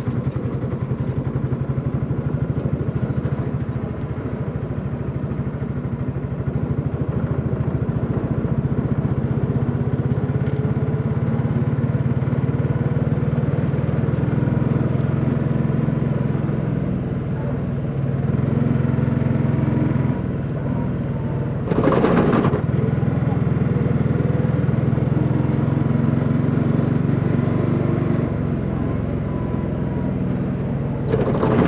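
Vehicle engine running steadily while driving, heard from inside the cabin, its pitch shifting a few times with speed. About 22 seconds in there is a brief loud rushing noise.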